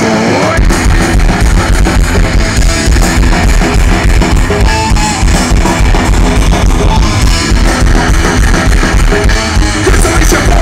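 Punk rock band playing live on an outdoor stage: guitars and drum kit, loud and continuous, heard through the crowd's camcorder. The low end drops out for a moment at the very start before the full band kicks back in.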